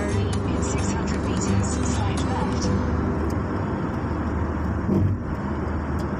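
Steady road and engine noise of a car driving on a highway, heard with a guitar song in the background that drops out about halfway through.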